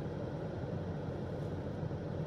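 Steady low rumble and faint hiss of background noise inside a car cabin, with no distinct events.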